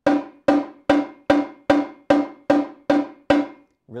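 A Yamaha marching tenor drum is struck with wooden sticks in full-out strokes from about 15 inches, the hands alternating. There are nine evenly spaced hits, about two and a half a second, each a sharp crack with a ringing tone of the same pitch.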